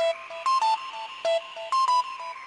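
Electronic music: short, beeping synthesizer notes in a quick repeating pattern over a slow rising and falling sweep.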